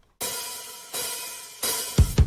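Opening of a pop-punk song: three crash-cymbal hits, each left to ring and fade, about two-thirds of a second apart, with a sharp drum hit near the end as the kit comes in.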